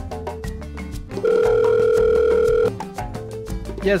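A phone's ringback tone on an outgoing call: one steady ring lasting about a second and a half, starting about a second in. Background music with a beat plays throughout.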